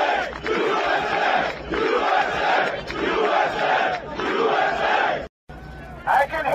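A large crowd chanting and shouting in rhythm, a loud chant about once a second, cutting off abruptly about five seconds in.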